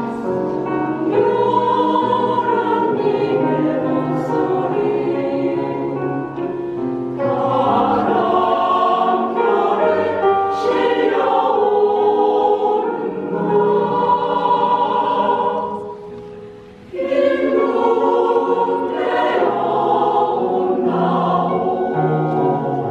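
Mixed choir of women's and men's voices singing a Korean choral song. The sound falls away briefly about three-quarters of the way through, then the full choir comes back in.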